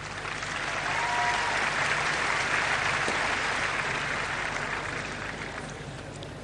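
Stadium crowd applauding. The clapping swells over the first couple of seconds, then slowly dies away.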